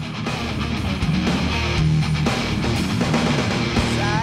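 Heavy metal band playing live, with distorted electric guitar to the fore over a dense, steady full-band backing.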